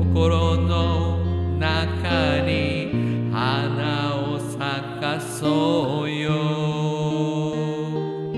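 Acoustic guitar accompaniment with a voice singing a slow melody in long, wavering held notes over sustained low notes.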